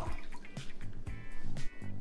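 Background music, with a hand-squeezed lemon dripping its juice into a cup of plant milk.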